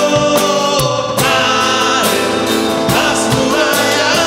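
Live worship band playing a Spanish-language praise song: voices singing over strummed acoustic guitar and drums, with a steady beat of drum hits.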